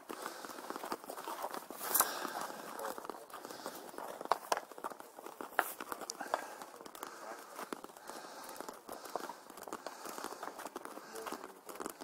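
Scattered light clicks and taps of sliotars hopping on the flat of hurleys, mixed with quick footsteps on tarmac as boys run the ball, over faint background voices.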